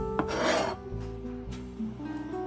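A knife blade scraping once across a plastic cutting board for about half a second, gathering chopped shallots, with a light click just before. Soft acoustic guitar music plays underneath.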